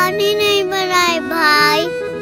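A young girl's high voice in a sing-song phrase, the pitch gliding up and down, over soft background music with long held notes.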